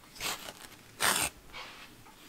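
Punched fabric being pulled off the toothed gripper strips of a wooden punch needle frame: two short scratchy rips, the second, about a second in, the louder.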